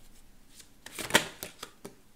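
Tarot cards being shuffled by hand: a quick series of soft snaps and flicks, loudest about a second in.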